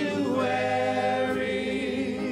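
A church worship team and congregation singing a hymn together, holding one long note with a slight waver.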